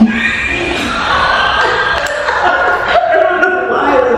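Indistinct voices talking, overlapping and hard to make out, with a sharp knock right at the start.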